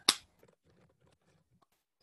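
A child tapping at a computer keyboard: one sharp clack just as it starts, then faint scattered key clicks for about a second and a half.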